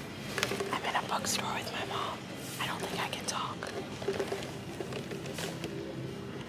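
Soft, whispered-sounding voices over quiet background music.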